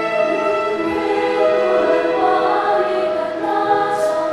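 Large mixed choir of men's and women's voices singing together in long held notes that move slowly from chord to chord.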